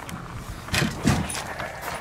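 A quick run of light clicks and knocks from something being handled, bunched together about halfway through.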